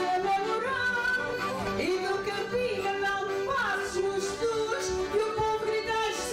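A woman singing over instrumental backing music, with long held notes that slide between pitches.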